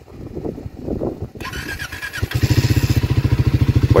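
Triumph Speed 400's single-cylinder engine being started cold with the electric starter: a brief starter whine, then the engine catches about two seconds in and settles into a fast, steady idle. It fires on the first press of the starter despite the sub-zero cold.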